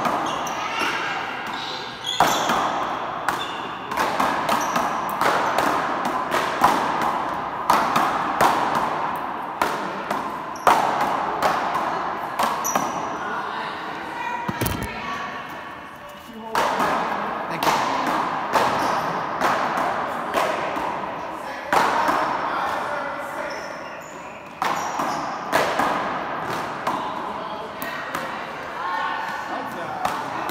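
Big-ball paddleball rally: paddles hitting the ball and the ball banging off the front wall and floor, each hit echoing in the hall. The hits come in quick runs with a lull about halfway through and another shorter one near the end, between points.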